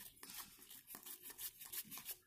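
Faint rustling and soft flicks of Panini Adrenalyn XL trading cards being counted through one by one by hand.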